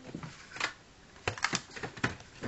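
Plastic DVD case being handled and opened: a few sharp plastic clicks, one just over half a second in and a quick cluster in the second half.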